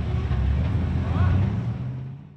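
Supercharged, methanol-fuelled engine of a Holden ute idling with a steady low rumble after a burnout, starting to fade out near the end.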